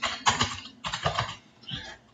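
Computer keyboard being typed on: a quick run of separate keystrokes as an email address is entered.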